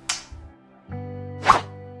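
Channel intro sting: a brief swoosh, then a held synth-like chord from about a second in, with one sharp hit about a second and a half in.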